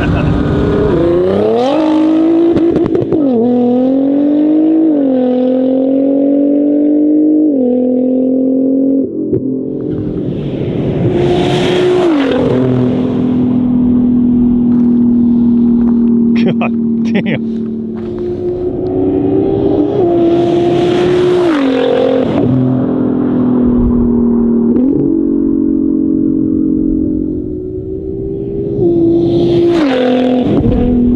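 Nissan R35 GT-R's twin-turbo V6 making hard pulls through the gears. The engine note rises and drops back at each upshift, holds steady for several seconds mid-way, then climbs again, with brief rushing bursts as pulls end.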